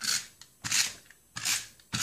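Stampin' Up! Snail tape runner laying adhesive on cardstock: four short strokes, about two-thirds of a second apart.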